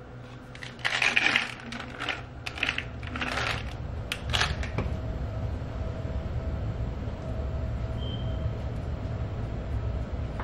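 Fish oil softgels rattling and clicking in a plastic bottle as they are shaken out, with sharp clicks from the bottle's flip-top cap, most of them in the first half. A steady low hum runs underneath and is plainest in the second half.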